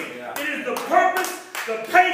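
A voice with scattered hand claps, a few sharp claps falling among drawn-out vocal sounds.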